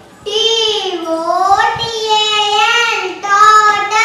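A child's voice singing long, held notes that glide between pitches, starting about a quarter second in with a short break near three seconds.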